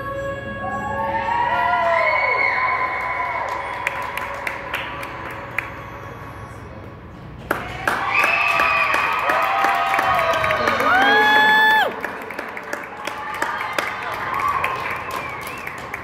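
Choral program music with singing for the first half, then, about seven and a half seconds in, a burst of spectators clapping and cheering, with voices calling out over the applause.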